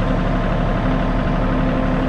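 Engine of an open roll-bar utility vehicle running steadily, heard from the seat, with a low rumble and a constant hum.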